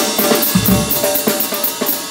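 Drum kit played solo: fast, dense strikes with cymbals ringing throughout and one deep bass drum hit about half a second in.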